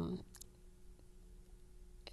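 A woman's voice trails off just after the start, then faint room tone with a steady low hum and two faint clicks.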